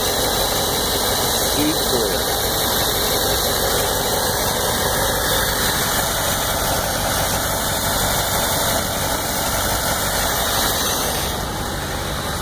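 1955 Ford Thunderbird's V8 engine idling steadily.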